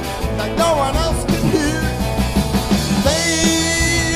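Garage rock band playing live: electric guitars, bass guitar and drums. A long note is held near the end.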